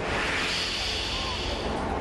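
Audience applause, starting suddenly and easing off after about a second and a half.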